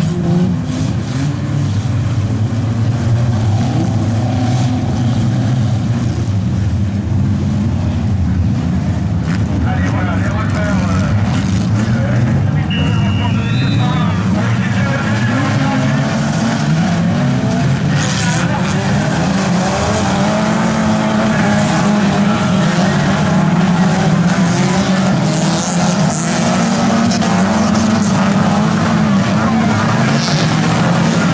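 Several old stock cars' engines revving hard together on a dirt track, pitch rising and falling as they accelerate and collide, loud and continuous.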